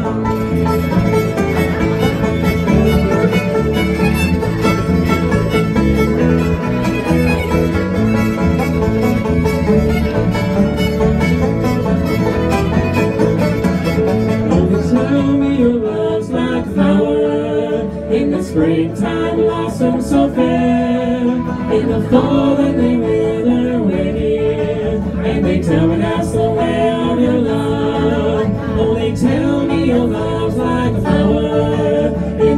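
Live string band playing a bluegrass-style folk song on banjo, acoustic guitar, electric bass and fiddle, with voices singing.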